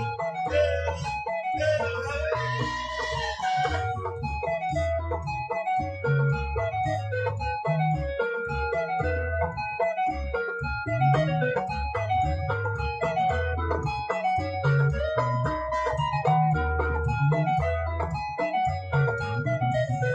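Electric bass guitar and electric guitar playing together: a rhythmic bass line of short repeated low notes under bright, repeating mid-range melody notes.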